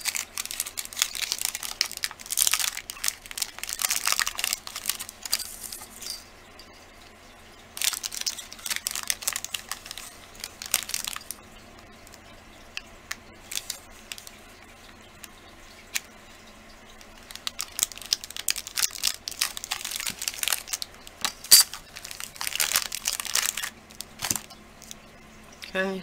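Plastic wrapper of a block of polymer clay crinkling and tearing as it is opened and handled. It comes in three long stretches of crackling with quieter pauses between.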